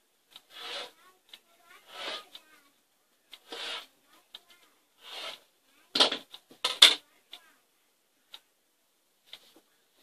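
Rotary cutter drawn through polyester batting along an acrylic ruler on a cutting mat: four short swishing strokes, then two sharp knocks from the ruler and cutter being set down and shifted on the mat, with a few light ticks.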